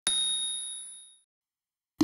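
A single bright chime sound effect, struck once and ringing out with two clear high tones that fade away over about a second. It is the confirmation ding for a subscribe button being clicked.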